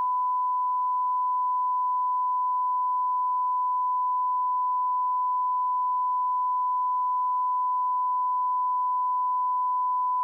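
Steady 1 kHz reference test tone, a single unwavering pitch held at constant level, the line-up tone that plays with colour bars at the head of a broadcast videotape.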